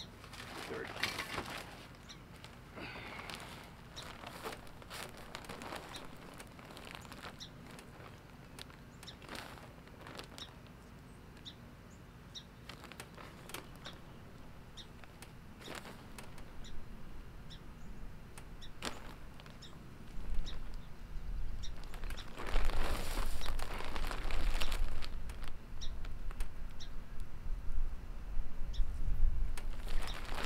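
Rustling and crinkling of a large plastic bag of garden soil being handled, with soil scooped and scraped out of it by hand. It grows much louder in the last third, with heavy low rumbling and thumps as the bag is shifted. Birds chirp faintly throughout.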